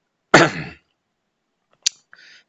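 A man clears his throat once, about a third of a second in. A single short, sharp click follows near the end.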